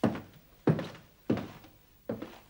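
Footsteps on a hard floor, a steady walking pace of three heavy steps, each a sharp thud with a short echo.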